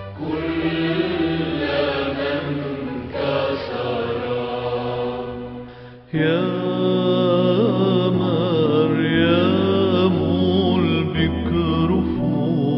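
Devotional chant music: a voice holding long, ornamented notes over a steady drone. The music fades just before six seconds in, and a louder passage starts abruptly with the voice sliding through wavering pitches.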